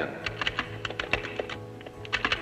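Quick run of keystrokes on a computer keyboard as text is typed in, about a dozen sharp clicks over a second and a half.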